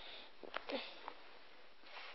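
A person sniffing close to the microphone, with a short murmured 'um' and a couple of faint clicks.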